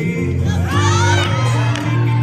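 Spectators cheering and shouting, many high voices rising and falling together for about a second, over swing dance music with a steady bass line.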